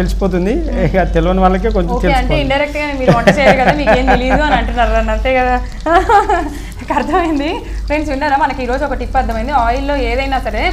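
Mostly talking, with chicken pieces deep-frying in oil in a kadai underneath.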